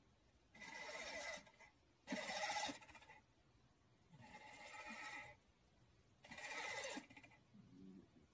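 A cat making a drawn-out, pitched sound four times, about every two seconds, in a steady rhythm.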